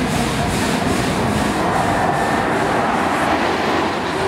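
Loud, steady fairground din: a continuous rumble of ride machinery mixed with the noise of the crowd, with no single event standing out.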